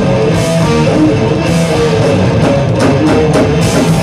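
Thrash metal band playing live: electric guitar riff over a drum kit, with a quick run of drum and cymbal hits in the second half.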